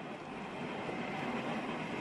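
Steady street background noise of traffic, an even hiss with no distinct events.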